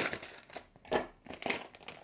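Plastic snack bag crinkling in several short, irregular bursts as it is cut open and handled.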